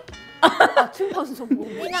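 Speech and laughter: several women's voices talking and calling out over one another, with chuckling.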